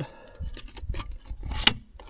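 Plastic cup holder sliding into the grooves of its mounting bracket: a few light scrapes and taps, then one sharp click about one and a half seconds in as it seats.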